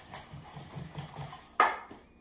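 Wire whisk working wet banana batter in a stainless steel bowl, soft strokes repeating about four to five times a second, then one loud knock of the whisk against the bowl near the end as it is set down.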